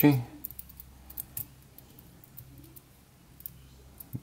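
Faint, sparse metallic clicks and ticks from the small worm screw of a metal adjustable-wrench keychain being rolled by the fingers to move its jaw. The screw turns with some sticking.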